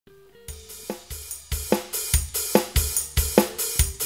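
A drum beat with kick drum, snare and hi-hat starts about half a second in and keeps a steady, even rhythm, a strong hit roughly every 0.4 seconds.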